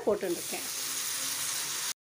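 Chopped tomatoes tipped into a hot pan of sautéed onions, sizzling steadily in the oil. The sizzle cuts off abruptly near the end.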